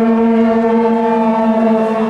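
A loud, steady horn-like tone held on one pitch, rich in overtones, lasting about three and a half seconds and cutting off just after the end.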